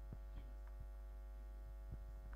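Steady low electrical mains hum with faint buzzing overtones, with a few very faint soft knocks.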